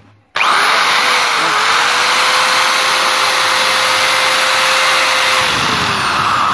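Handheld rotary tool driving a small burr, grinding into the steel bore of a moped variator part to widen it so it fits the crankshaft. It is a steady motor tone over a loud harsh grinding hiss, starting just after the beginning, with the pitch sagging briefly under load about a second and a half in and again near the end.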